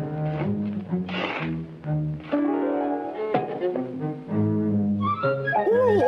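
Orchestral cartoon score music led by low bowed strings and double bass, moving note by note, with a climbing run of notes near the middle.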